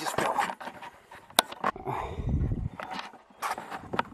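Scuffling and rubbing on the camera microphone from a fall into mud, with a sharp click about one and a half seconds in and a low rumble about two seconds in.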